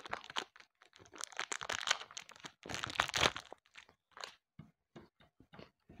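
Plastic wrapper of a polymer clay packet crinkling and tearing as it is opened, in two bursts about a second in and about three seconds in, followed by a few faint light clicks.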